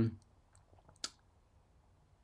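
A man's voice trailing off at the start, then near silence broken by a few faint ticks and one short, sharp click about a second in.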